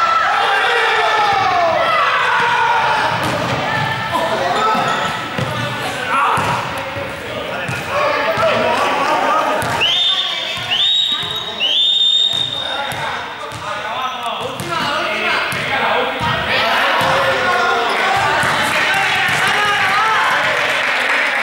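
Many students' voices talking and calling out in an echoing sports hall, with a ball bouncing and thudding on the court floor. About ten seconds in come three short high squeaks, the last one longest.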